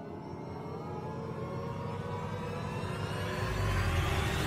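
Eerie cinematic riser sound effect: a low rumble under a cluster of tones slowly gliding upward, with a hiss that grows, the whole swelling steadily louder.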